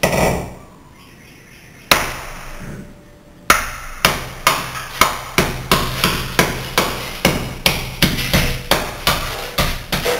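Ball peen hammer striking a glass block to break it out of its mortar: two separate blows, each followed by about a second of cracking glass, then a steady run of blows at about two to three a second as the block shatters.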